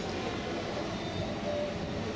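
Steady outdoor background rumble with a hiss above it, even in level, with no distinct event standing out.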